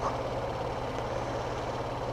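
Motorcycle engine idling steadily with a low, even hum.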